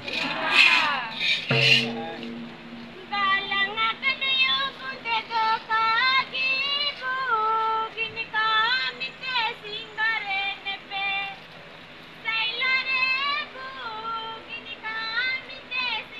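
Women's voices singing a folk devotional song together, long held notes that slide up and down between pitches. A couple of loud noisy bursts come in the first two seconds.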